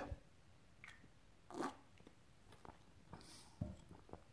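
Faint sounds of a person sipping and swallowing beer from a pint glass, then a soft knock as the glass is set back down on a cloth table runner near the end.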